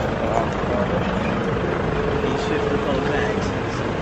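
Street noise: a steady hum of passing traffic with one vehicle's engine holding a steady tone through the second half, and faint voices of people nearby.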